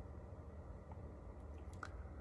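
Quiet room tone with a steady low hum, and a faint mouth click near the end as a man's closed lips part into a smile.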